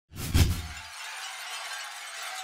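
Glass-shatter sound effect: a heavy, deep impact about half a second in, then a spray of tinkling shards that carries on after the boom dies away near the one-second mark.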